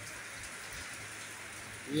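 Steady rain falling on garden plants and a wet concrete rooftop floor.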